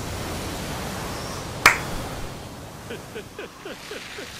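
Anime sound effects: a steady rushing noise, a single sharp crack about one and a half seconds in, then faint short rising sounds near the end.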